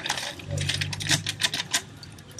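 Water pouring from an upturned plastic water bottle into a metal bucket, the thin bottle glugging and crackling in a quick run of clicks.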